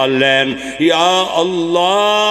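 A man's voice chanting a supplication (dua) into a microphone in a drawn-out melodic way: long held notes joined by rising slides in pitch.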